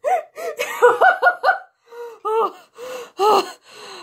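A girl laughing in short bursts, with gasping breaths between them.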